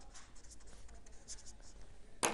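Marker pen writing on a white board: a few faint, short scratchy strokes as the words are written.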